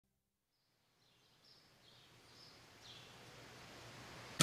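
Near silence: a faint hiss slowly rising, with a few faint, short high chirps.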